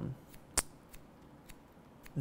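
Barber's scissors snipping hair: one sharp snip a little over half a second in, with a few fainter clicks around it.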